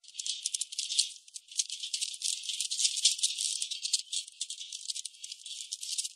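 Continuous fast rattling, like a shaker, thin and high with no low end, pulsing irregularly in strength.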